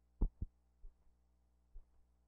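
Low thumps over a faint steady electrical hum: a loud double thump near the start, then fainter single thumps roughly once a second.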